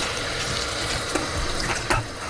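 Tap running into a bathroom basin: a steady rush of water, with a few light clicks in the second half.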